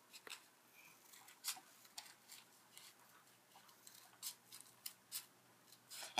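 Faint, separate snips of scissors cutting through a folded paper coffee filter, about half a dozen spaced unevenly.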